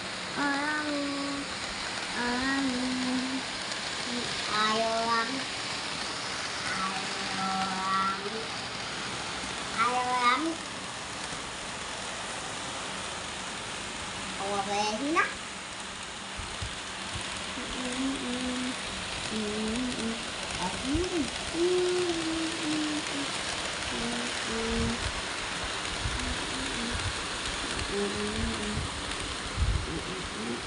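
Short bursts of a person's wordless voice, like humming or vocalizing, with a few rising squeals, over a steady hiss.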